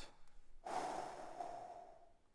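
A man breathing out long and audibly into a close headset microphone. The deliberate exhale starts about two-thirds of a second in and fades away over more than a second.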